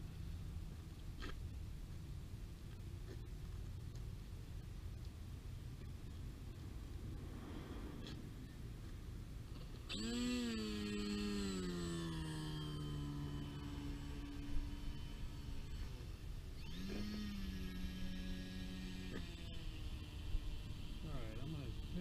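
Electric motor and propeller of a Ritewing Z3 flying wing on a launch dolly, throttled up twice. About ten seconds in, a whine starts abruptly and its pitch sags over about five seconds before cutting off. A shorter, steady burst follows a couple of seconds later, all over a low steady background rumble.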